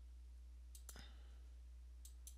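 Computer mouse clicks: a quick cluster of clicks about a second in, over a faint steady low hum.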